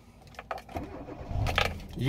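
Hyundai Matrix 1.6 four-cylinder petrol engine being started: a click of the key, then the starter cranking and the engine catching about a second and a half in. It starts without trouble.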